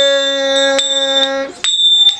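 A man holds one long sung note of a Vasudev devotional song. Small hand cymbals are struck several times against it, ringing at a steady high pitch. The note breaks off about a second and a half in, and a cymbal strike and ringing follow.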